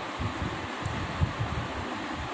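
Pencil scratching on paper as a word is handwritten in a workbook: a soft, steady scratching hiss.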